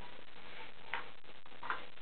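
Quiet room with faint ticks and soft taps as a thick cardboard page of a board book is lifted and turned.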